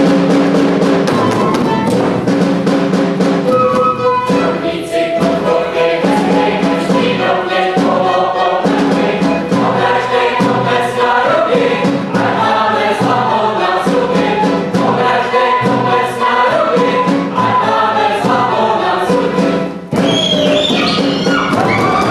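Choral music: a choir singing over held instrumental accompaniment. The music breaks off briefly near the end and a new passage starts.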